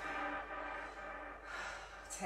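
A woman breathing hard, with a breathy exhale about one and a half seconds in, from the exertion of holding a side plank. Faint background music runs underneath.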